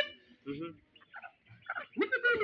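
Chickens giving a few short, separate squawks and clucks.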